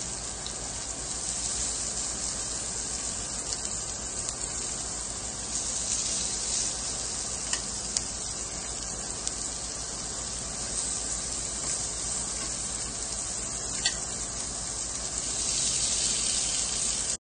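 Salmon fillets, chicken skewers and beef sizzling on an electric grill plate: a steady hiss with a few faint clicks.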